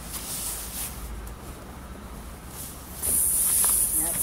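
Air hissing steadily out of a car tire through the puncture left by a nail just pulled from the tread, starting suddenly about three seconds in.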